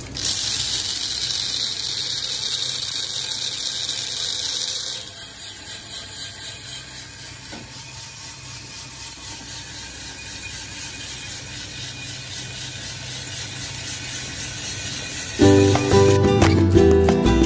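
Green coffee beans charged into an Aillio Bullet R1 roaster's rotating drum: a loud hissing rattle of beans sliding in for about five seconds. It then drops to a quieter steady rattle of the beans tumbling in the turning drum. Music comes in near the end.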